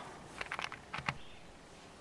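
A few light clicks and handling knocks in quick succession, then faint room tone.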